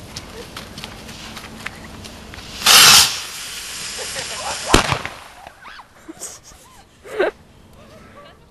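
New Year's Eve firework rockets driving a wine-crate rocket car ignite with a loud, short hiss about two and a half seconds in. They burn on more quietly, and there is a single sharp bang just before five seconds in.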